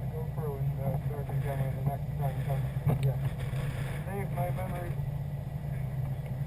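A 2011 Subaru WRX's turbocharged flat-four engine idling steadily, heard from inside the car, with voices talking over it. A single short knock comes about three seconds in.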